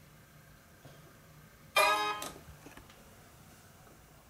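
A Windows computer's system chime, a single short pitched tone about two seconds in that fades within half a second, as the User Account Control prompt comes up for the installer.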